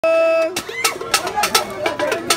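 Live music with voices: a held high note for about half a second, then irregular sharp percussion strikes with voices calling over them.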